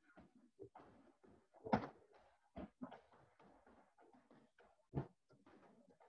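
Kicks landing on free-standing heavy bags: two louder thuds about three seconds apart, with fainter knocks of other strikes between them.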